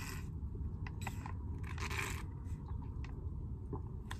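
Sipping juice through the straw of a Capri Sun pouch: three short slurps with the foil pouch crinkling and a few small clicks, over a steady low rumble.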